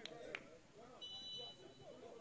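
Faint open-air match ambience, with a brief high, steady whistle-like tone lasting about half a second, about a second in.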